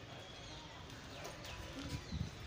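Faint outdoor background noise with a few brief, high, falling chirps a little past the middle.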